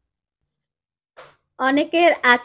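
Dead silence for about a second, a brief faint hiss, then narration speech starts about a second and a half in.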